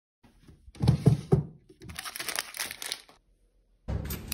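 Rustling, crinkling handling noise, with three dull thumps about a second in followed by a longer stretch of rustle that stops near the end.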